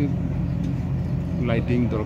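An engine running steadily, a low even hum under outdoor talk.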